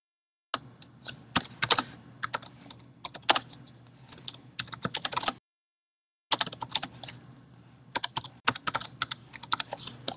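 Typing on a computer keyboard, picked up through an open microphone: irregular key clicks in quick runs over a faint low hum. The sound cuts out to silence for about a second in the middle, then the typing resumes.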